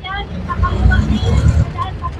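A silver SUV driving past close by: a low engine and tyre rumble that grows about half a second in. Faint voices are heard in the background.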